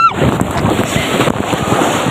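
Water splashing and sloshing close against the phone's microphone as it is carried into a waterslide splash pool: a loud, irregular crackling wash of water.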